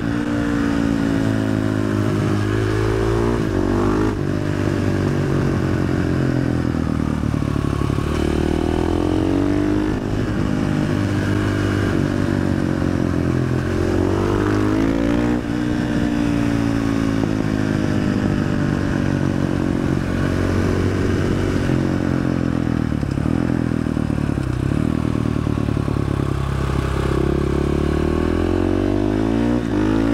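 KTM 500 EXC single-cylinder four-stroke engine, running through an FMF exhaust with the dB killer removed, revved hard under way. Its pitch climbs and drops again and again as the rider accelerates, shifts and slows for bends.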